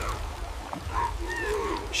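A few short, moaning animal-like vocal calls about a second in, over a low storm rumble that fades early on.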